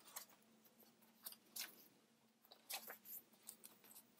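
Faint paper rustles from the pages of a spiral-bound planner being turned by hand. There are a few short, soft swishes, with a small cluster close together about three seconds in.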